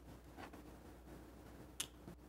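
Quiet room tone with a single short, sharp click near the end.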